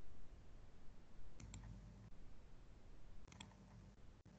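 Computer mouse clicking in two quick clusters, about a second and a half in and again about three and a half seconds in, over a faint low hum.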